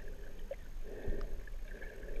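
Muffled underwater swishing and surging of water around a camera in a waterproof housing as a snorkeler swims. It comes in surges about once a second, with scattered faint clicks over a low rumble.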